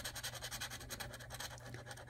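Lottery scratch-off ticket being scratched with a handheld scratcher tool: rapid, rasping back-and-forth strokes, about ten a second, scraping the coating off the prize amounts.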